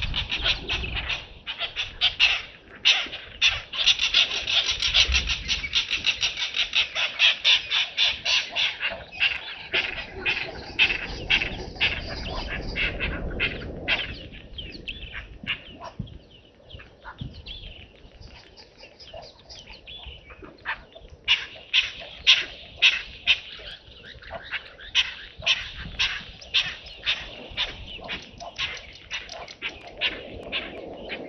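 Wild birds calling in a fast, chattering run of repeated notes. The calling is dense and loud for the first half, thins out for several seconds, then comes back as strong, spaced notes.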